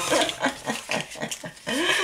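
A woman laughing in quick, short breaths, with a rising vocal sound near the end.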